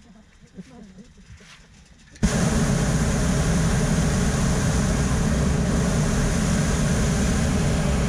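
Hot air balloon's propane burner firing during the landing approach: a loud, steady roar that starts abruptly about two seconds in and cuts off right at the end. Light laughter is heard before it.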